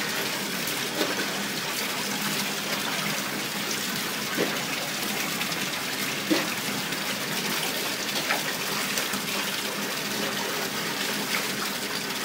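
Tap water running steadily into a bathtub, with a handful of short, sharper sounds through it.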